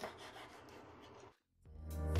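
Faint tap of a knife on a wooden cutting board while green onions are sliced, with quiet handling noise. Partway through, the sound cuts off into a brief silence, and then background music fades in and grows louder.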